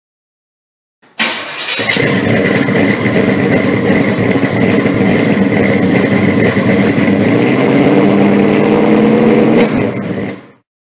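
A car engine starts suddenly about a second in and keeps running steadily at high volume, cutting off at the end.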